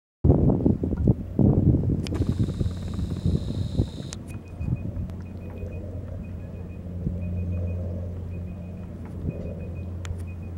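A steady low engine hum throughout, with wind buffeting the microphone for the first few seconds. A high whine sounds for about two seconds, stopping abruptly, and a faint high chirp repeats about once a second after it.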